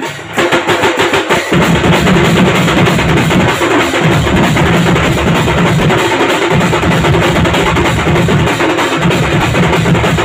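Street percussion band playing loudly: a rack of drums and cymbals together with hand-held frame drums struck with sticks, in fast, continuous beating. The full band comes in about a third of a second in, and the deep drum sound fills out from about a second and a half.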